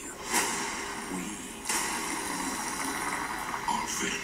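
Film trailer soundtrack playing back, a dense hissing wash of sound effects. It swells shortly after the start and again partway through, then holds steady.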